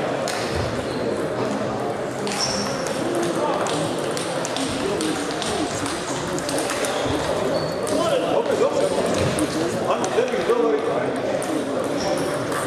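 Table tennis balls clicking off bats and tables from several matches at once, irregular and overlapping, over a steady murmur of voices.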